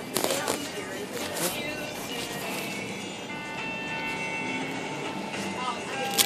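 Background music playing, with a few short crinkling rustles of an ice cream cone's paper wrapper being pulled at in the first seconds.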